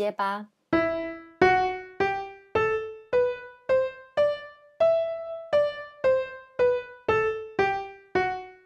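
Piano playing the E natural minor scale one note at a time, about two notes a second. It climbs an octave from E to E and then steps back down.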